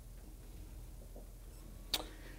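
A pause in a microphone-amplified speech: faint room tone with a low steady hum, and one brief sharp sound near the end.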